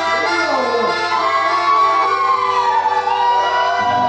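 Live chamamé played on a piano accordion holding chords over acoustic guitars. Above it a voice holds long notes that glide up and down in pitch.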